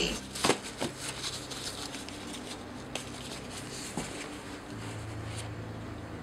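Sheets of handmade paper being handled and set down on a wooden table: a few short, crisp rustles in the first second and single soft ones around three and four seconds in, over a steady low hum.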